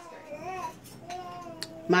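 A faint voice in a lull in the talk: a short wavering sound, then a drawn-out steady note about a second in, with a single light click near the end.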